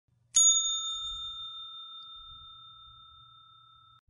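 A single bell-like chime, struck once about a third of a second in, ringing with a few clear high tones that fade away over about three seconds.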